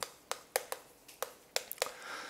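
Chalk tapping and clicking against a chalkboard while a word is written: a quick, uneven run of about eight or nine sharp ticks over two seconds.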